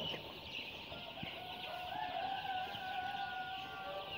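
A large flock of young chicks peeping continuously, a dense high chirping. A faint steady hum joins in about a second in.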